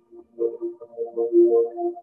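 Music: a keyboard playing a melody of short notes, several to the second, after a brief pause.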